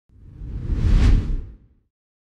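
A whoosh transition sound effect with a deep rumble. It swells for about a second and then fades away.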